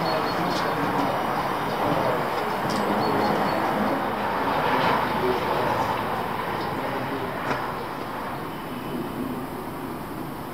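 A steady rushing noise with no clear pitch that slowly fades over the last few seconds, with a few faint clicks.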